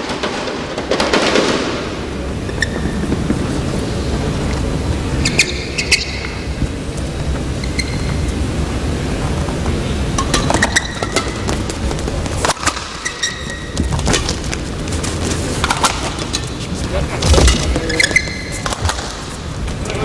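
Badminton rally: sharp racket strikes on the shuttlecock come every second or so, with short high squeaks of shoes on the court mat, over a steady murmur of the hall's crowd.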